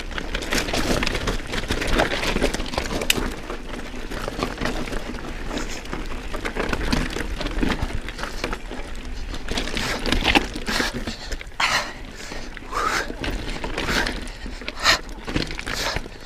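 Orbea Rallon full-suspension mountain bike rolling over loose rock and scree: tyres crunching and clattering over stones with the bike rattling, a continuous run of sharp knocks with heavier hits in the second half. A low wind rumble on the microphone runs underneath.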